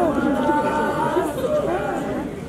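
Several performers' voices talking and calling out together, with one voice holding a long, steady call near the middle.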